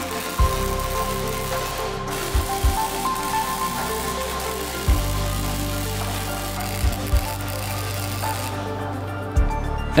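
Flux-core wire welder's arc crackling steadily while a steel plate is welded onto square tubing, over background music with a bass beat. The crackle stops shortly before the end.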